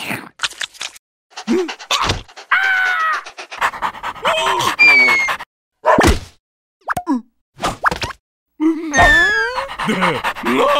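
Cartoon sound effects and wordless character voices: a run of quick clicks and sharp hits between squeaky, babbling vocal noises, with several voices sliding down in pitch near the end.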